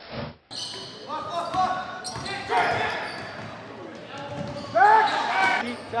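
Basketball game in an echoing gym: spectators and players shouting over a steady crowd murmur, with the ball bouncing on the court. The loudest shouts come about five seconds in.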